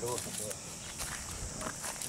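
Faint footsteps on dry ground, a few soft steps, after the tail of a voice at the very start.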